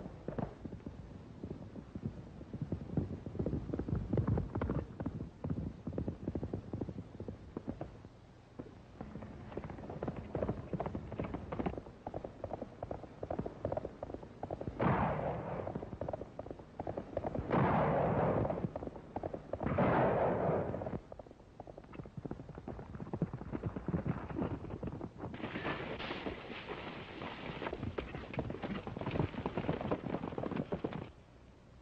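Horses galloping on a dirt trail, hoofbeats in a fast, dense clatter, on a thin-sounding 1930s film soundtrack. About halfway through come three louder, noisy crashes, each lasting around a second.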